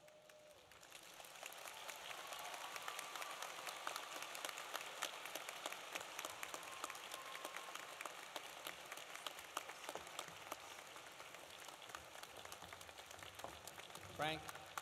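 Audience applauding: dense clapping from many hands that builds up over the first couple of seconds and eases off slightly near the end.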